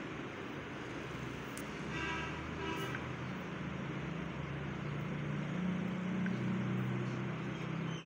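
Background road traffic: a steady hiss of traffic noise, a short horn toot about two seconds in, then a low droning hum that grows louder toward the end.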